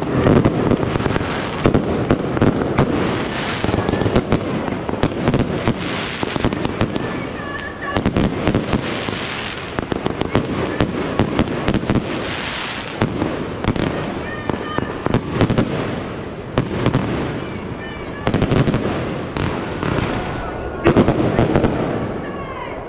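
Consumer New Year's fireworks going off: a dense, unbroken run of sharp bangs and crackles, with ground-launched rockets bursting overhead.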